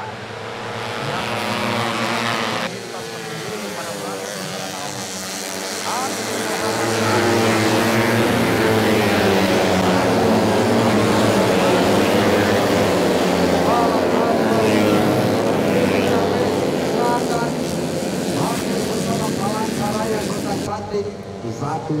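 A pack of 130 cc four-stroke underbone racing motorcycles passing at full throttle, many engines revving up and down over one another. The sound grows louder about seven seconds in as the bikes come close.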